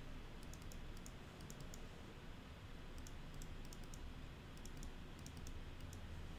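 Faint clicks of a computer keyboard, coming in small quick clusters, over a low steady background noise.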